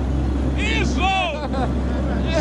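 Excited shouting voices over the steady low drone of a borehole drilling rig's engine, the drone dropping a little about a second in.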